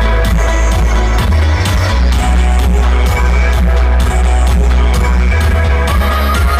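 Loud electronic dance music from a DJ set played over a stage sound system, with a heavy sub-bass line and a steady kick drum about twice a second.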